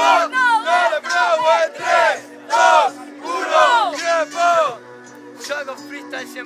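Voices shouting rhythmic hype calls, one loud call about every half second, over a sparse drumless hip-hop beat; the shouts stop a little before the end and the beat carries on alone.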